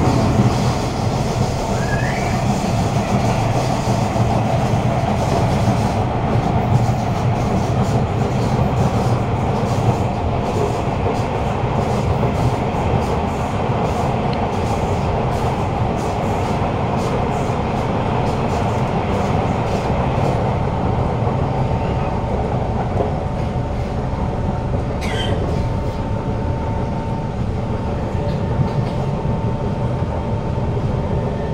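A Kawasaki Heavy Industries C151 metro car with GTO-VVVF traction, running along the track as heard from inside the carriage: a continuous rumble of running noise, with brief rising whines about two seconds in and again near the end, and a steady tone joining about two-thirds of the way through.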